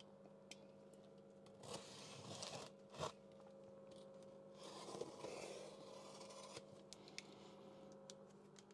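Faint scraping and slitting of a utility knife cutting the packing tape on a cardboard box, in a few short stretches, with a single sharp click about three seconds in.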